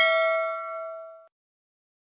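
A notification-bell ding sound effect: a single bright, bell-like chime ringing out and dying away just over a second in.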